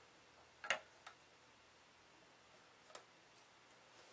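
Tennis racket being set down on a wooden balancing jig that rests on two digital scales: a sharp click about three-quarters of a second in, a smaller tap just after, and a faint tick near three seconds, with near silence between them.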